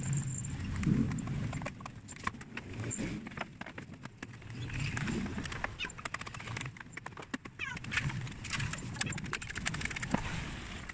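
A metal putty-knife scraper scraping and chipping old paint off a plastic motorcycle side cover, with irregular scratchy scrapes and sharp clicks as flakes break away. The old paint comes off easily because it was poorly bonded.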